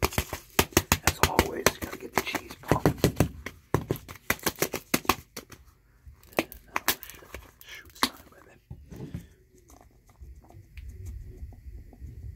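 A plastic canister of grated cheese being shaken hard: a fast run of sharp rattling knocks for about five and a half seconds, then a few scattered clicks and taps as the lid is handled.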